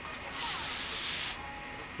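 Doubled yarn being pulled through the stitches of a crocheted slipper sole while whip-stitching the edge: a soft rubbing hiss lasting about a second.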